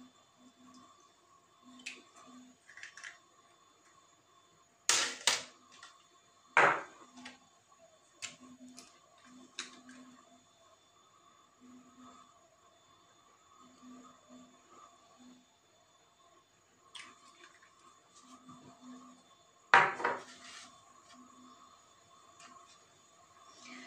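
Small plastic bottles, caps and a plastic jug being handled on a metal tray: a few scattered clicks and knocks, the loudest about five seconds in, just under seven seconds in and near the end, over a faint steady hum.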